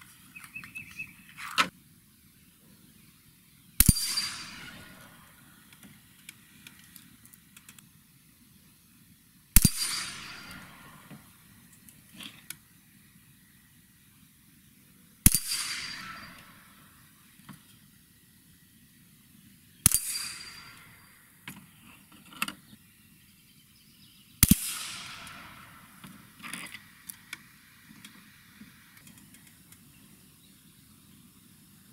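Five shots from a bolt-action .22 Long Rifle rifle, about five seconds apart, each sharp crack followed by a fading echo. Light metallic clicks of the bolt being worked come between the shots.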